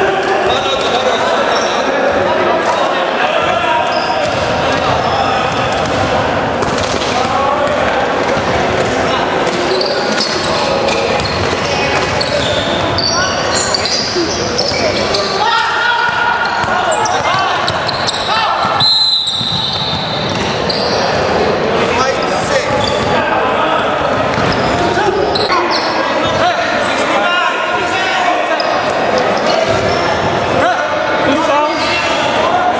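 Basketball bouncing on a hardwood gym floor, with indistinct players' voices echoing through the hall.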